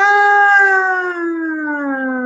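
A woman's voice holding one long, loud vowel that slides slowly down in pitch, like a drawn-out wail.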